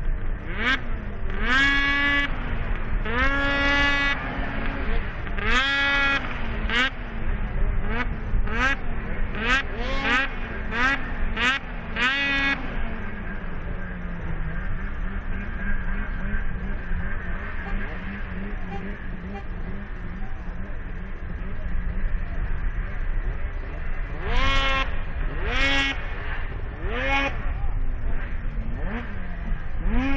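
Several two-stroke snocross snowmobile engines idling at the start line, blipped again and again so the pitch jumps up and falls back about once a second. The blipping stops for a stretch of steady idle in the middle and starts again near the end.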